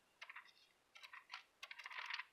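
Faint clicks and soft rustles of thin Bible pages being leafed through, in a few small clusters that come closer together in the second half.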